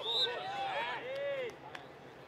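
Sideline spectators shouting encouragement, 'Kom igen!', several raised voices overlapping and fading out about a second and a half in. A single sharp knock sounds near the end.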